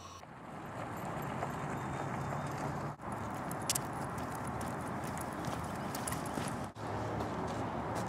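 Dog-pulled bicycle tires dragging over the ground, a steady scraping noise mixed with footsteps. It breaks off briefly twice.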